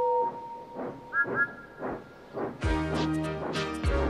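Steam locomotive whistles: a lower two-note whistle tails off in the first second, then a higher whistle toots twice and holds, over faint steady chuffing of the engines. A little over halfway through, music starts and takes over.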